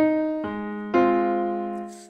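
Piano playback from notation software sounding sustained chords: one chord at the start, a new one about half a second in and another about a second in, the last ringing and fading out near the end.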